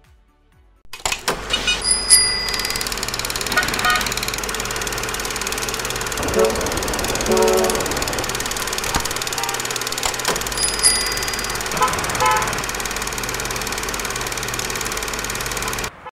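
Road traffic: a steady noise of passing cars and motorbikes that starts abruptly about a second in, with a few short pitched sounds over it.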